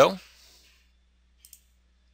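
Two quick, faint computer mouse clicks about a second and a half in, selecting a tab in the software, against near silence.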